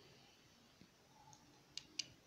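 Two short, sharp clicks near the end, about a quarter second apart, as a small toy train tender is turned in the fingers; otherwise near silence.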